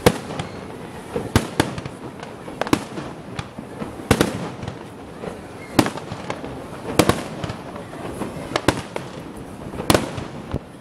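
Aerial fireworks shells bursting overhead: about ten sharp bangs at irregular intervals, a few of them coming in quick pairs.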